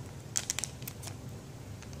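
Faint crinkling of a plastic Whirl-Pak sample bag being handled, with a cluster of quick crackles about half a second in and a few softer ones near the end.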